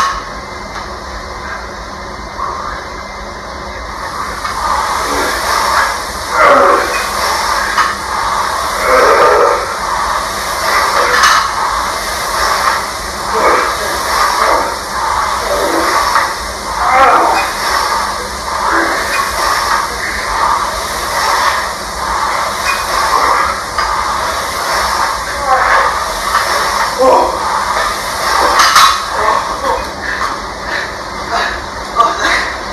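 Hard breathing and strained grunts of exertion from men grappling, in irregular bursts a second or two apart, growing louder about four seconds in.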